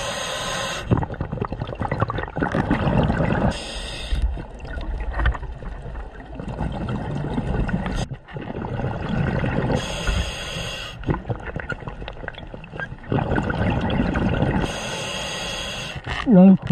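Scuba diver breathing through a regulator underwater: a short hiss with each inhalation, four times, between rumbling, gurgling bursts of exhaust bubbles.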